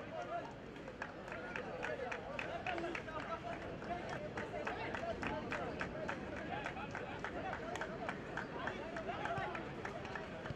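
Crowd of football spectators, many voices shouting and chattering at once, with a run of quick sharp beats, about three or four a second, through the middle of the stretch.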